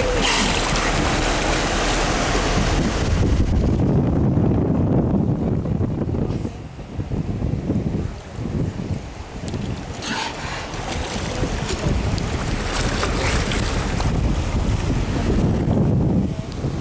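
Wind buffeting the microphone over water rushing and splashing along the hull of a boat under way. The wind drops briefly a couple of times midway.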